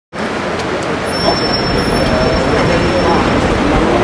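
Steady city street noise: road traffic running, with voices talking in the background and a faint thin high tone for about two seconds in the middle.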